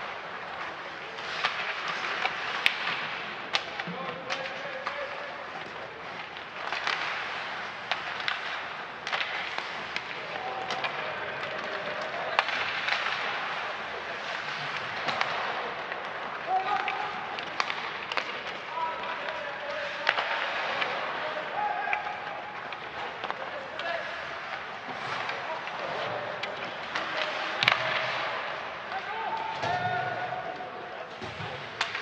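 Ice hockey play: skate blades scraping the ice, with many sharp clacks of sticks and puck scattered throughout, and brief shouts from players.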